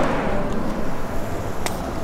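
Steady outdoor background noise, a low rumble with hiss, and one sharp click about one and a half seconds in.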